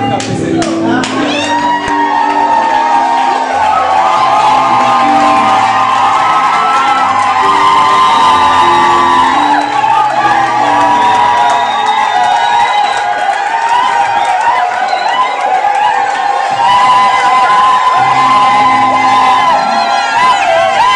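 Loud church praise music: a bass line steps from note to note under long, high held voices, while a congregation shouts and cheers.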